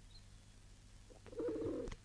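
Mostly quiet, with a few faint high bird chirps at the start, then a pigeon or dove cooing once, low and brief, near the end.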